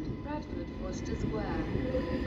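Class 331 electric multiple unit approaching along the platform, heard as a steady low rumble, with faint voices over it.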